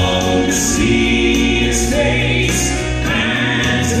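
A male Southern gospel quartet singing a gospel song in close four-part harmony through microphones, over a steady instrumental accompaniment.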